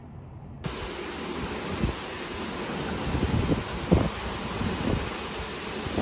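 Wind blowing over the microphone, with the steady hiss of ocean surf breaking on the beach beneath it. It starts about half a second in, and the wind gusts in low buffets a few times.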